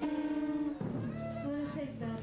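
Amplified electric guitar notes ringing out between songs. One note starts suddenly and is held for most of a second, then gives way to lower sustained notes.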